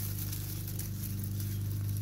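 A steady low machine hum, with faint crackling rustles of sweet potato vines being gripped and pulled from a container pot.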